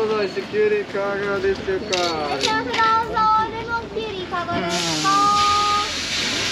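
A woman's drawn-out, wordless vocal sounds, sliding up and down in pitch with some notes held, as she tastes a pickled cucumber stick. A steady hiss comes in near the end.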